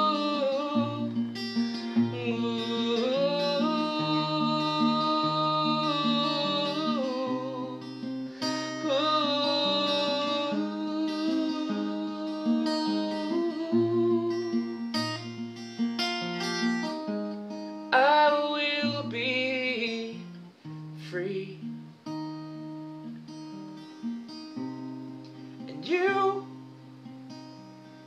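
Acoustic guitar being fingerpicked with a moving bass line, under long held vocal notes without clear words through most of the first two-thirds. The playing grows quieter and sparser in the last several seconds.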